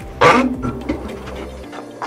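The glass-fronted door of a wood-burning fireplace insert being swung shut and pressed closed: one sharp clunk about a quarter second in, then a quieter rattle as it is latched. A steady low hum runs underneath and stops near the end.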